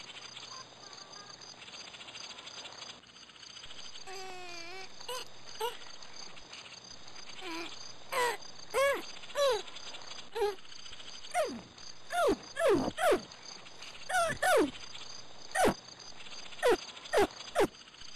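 A series of short pitched animal calls over a faint steady background. A wavering call comes about four seconds in, then repeated arching chirps, and in the second half quick falling calls, each well under a second long.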